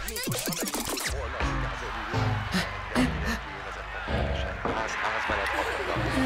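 Rapid ratcheting clicks for about a second as the hands of a mantel clock are wound round, then background music.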